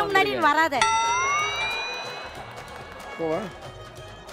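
Speech, then about a second in a bright ringing tone with many overtones that slides up in pitch at first, then holds and fades away over about two seconds: an edited-in sound effect or musical sting.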